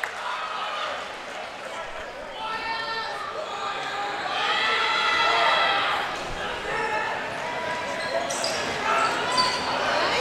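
A basketball gymnasium: a basketball bouncing on the hardwood court over crowd voices and calls from the stands, with a few sharp bounces near the end.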